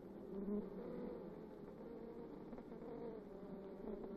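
A colony of honeybees buzzing together in the hive: a steady low hum whose pitch wavers slightly.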